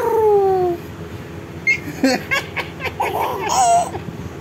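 A baby laughing in a run of short, quick bursts, after a long falling voice sound at the start.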